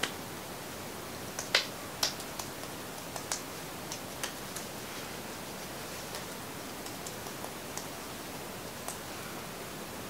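Faint, scattered soft taps of fingertips patting facial oil into the skin, over a steady background hiss.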